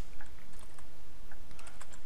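A few faint, scattered clicks of a computer keyboard, heard over a steady background hiss.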